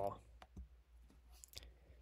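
A few faint computer mouse clicks, two close together about half a second in and another about a second later.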